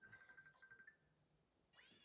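Near silence: room tone, with a faint, steady high-pitched call lasting about a second near the start.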